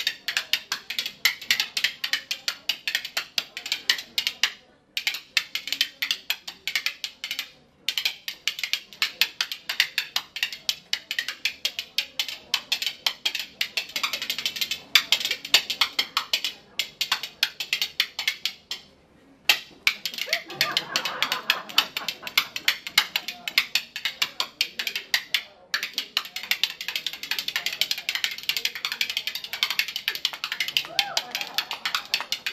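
A pair of spoons played as a rhythm instrument, rattled very fast against the hand and thigh in a dense stream of clicks, broken by a few brief pauses.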